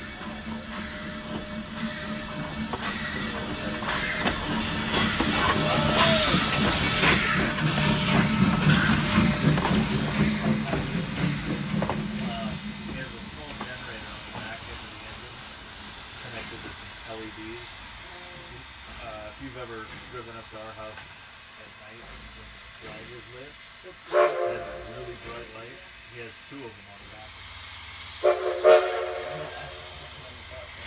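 Steam locomotive No. 110 passing close by, its steam hissing, with a rapid run of beats that swells and then fades over the first half. Near the end there are two short blasts of its steam whistle.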